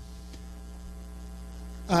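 Steady low electrical mains hum from a microphone and sound system.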